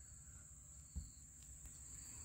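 Near silence under a steady high-pitched trill of crickets, with one faint click about a second in.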